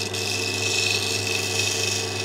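Electric lapidary machine running steadily with its 1200-grit diamond Nova wheel spinning, an opal on a dop stick held against the wet wheel for pre-polishing. A constant hum with a thin, steady high whine over an even hiss.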